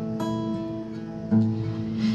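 Acoustic guitar strummed between sung lines: two chords about a second apart, each left ringing.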